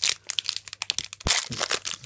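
Foil trading-card booster pack crinkling in the fingers and being torn open, a dense run of irregular crackles with the loudest rip a little past halfway.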